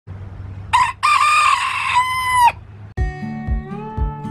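Rooster crowing: a short first note, then one long drawn-out call that drops in pitch as it ends. Guitar music starts about three seconds in.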